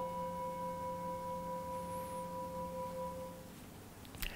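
A metal singing bowl struck once with a mallet, ringing with several steady tones at once that waver slightly and fade out a little before the end. It sounds to close one stage of a guided meditation and open the next.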